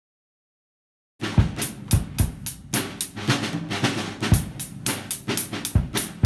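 Drum kit played with wooden drumsticks, starting about a second in: a groove of bass drum, snare and cymbal hits.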